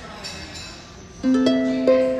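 Concert harp plucked: after a quiet moment, three notes in the low-middle range sound about a second in, in quick succession, and ring on over one another.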